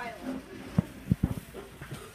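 Low murmur of children's voices in a classroom, with a quick cluster of four or five dull low thumps about a second in.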